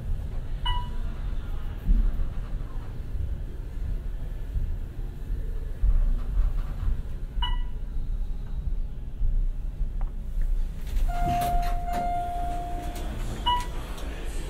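Otis hydraulic elevator car travelling up, with a steady low rumble of the ride. A short electronic chime sounds three times: about a second in, about halfway, and just before the end. Near the end clicks and a steady beep of about two seconds come as the car stops and the doors open.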